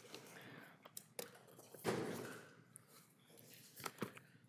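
Quiet room with a few faint sharp clicks around one second in and a brief soft rustle about two seconds in.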